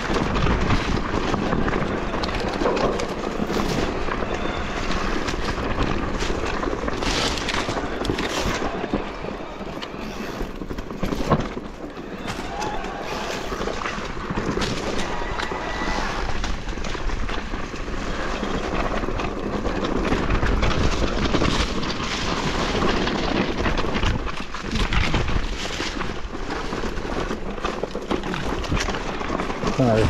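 Mountain bike ridden down a rocky, loose singletrack, heard from a handlebar-mounted camera: steady noise of tyres crunching over stones and the bike rattling, with wind on the microphone and frequent knocks as it hits rocks, the sharpest about eleven seconds in.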